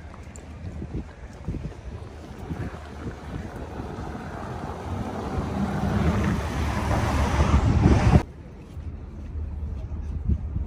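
A vintage-style open car drives past, its engine and tyres growing louder over a few seconds to the loudest point about eight seconds in, where the sound cuts off suddenly. Wind noise on the microphone.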